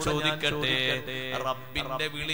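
A man's voice chanting in a drawn-out, melodic style, holding long steady notes.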